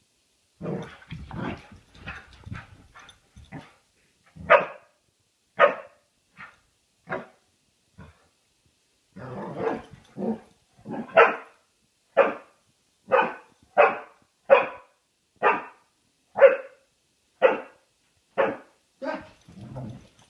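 Brittany spaniel barking in play: low growly grumbles over the first few seconds, then single sharp barks, settling into a steady run of about one bark a second for the second half.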